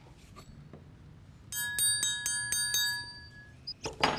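A triangle struck quickly and repeatedly, about four strikes a second, beginning about a second and a half in and lasting some two seconds, then ringing out briefly.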